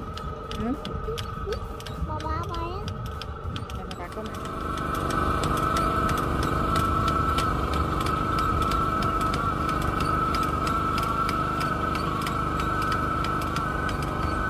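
Voices for the first few seconds, then from about four seconds in a rice transplanter's engine running steadily and louder, with a strong steady hum and even ticking.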